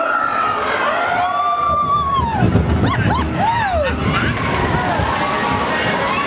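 Water sloshing and churning in the Splash Mountain log flume channel, a low rushing that swells about two seconds in. Voices that swoop up and down in pitch run over it.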